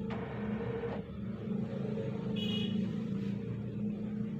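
Steady low mechanical hum, swelling slightly in the middle, with a brief high-pitched tone about two and a half seconds in.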